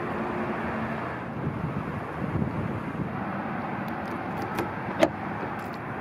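Steady outdoor background rumble like distant traffic, with a few light clicks about four to five seconds in, the sharpest about five seconds in.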